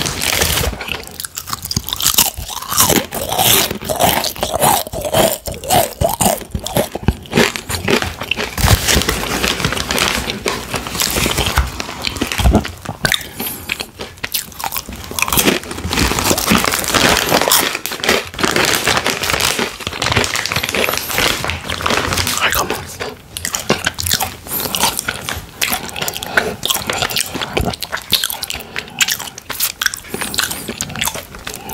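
Crunching and chewing of Takis Intense Nacho rolled tortilla chips close to the microphone: a steady run of sharp, crisp crunches.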